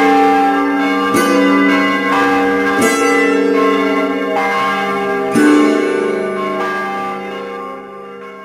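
Church bells ringing, struck again every second or two, each strike ringing on with long overlapping tones. They die away near the end.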